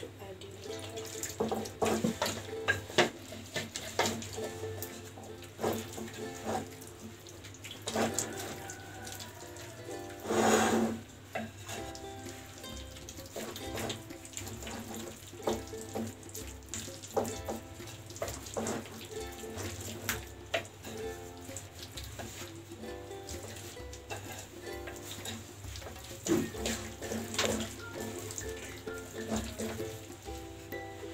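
A wooden spoon stirring thick, wet batter in a ceramic plate, clacking irregularly against the plate, with water poured in from a jug as the batter is thinned, over background music.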